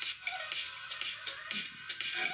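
Music playing thin and tinny from a Huawei Watch GT2 smartwatch's small built-in speaker, with a quick, steady beat of light percussive ticks and almost no bass.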